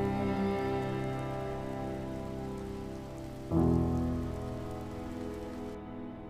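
Rain falling steadily under the closing chords of a piano song. One held chord fades away, and another is struck about halfway through and slowly dies out.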